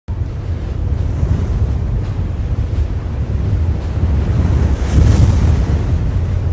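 Intro sound effect: a loud, rough low rumble that swells into a whoosh about five seconds in.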